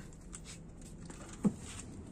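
Faint small taps and shuffles in a small wooden room, with one short low thump about one and a half seconds in.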